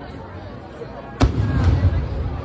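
A firework going off with one sharp bang a little over a second in, followed by a low rumble.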